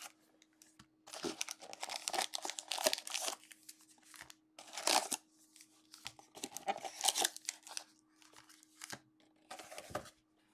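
2020 Panini Illusions football card packs' wrappers crinkling as they are lifted out of the box and stacked, in several bursts of rustling with short pauses between.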